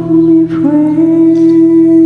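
A singer humming a held note over a soft ballad backing track, moving to a new note about half a second in.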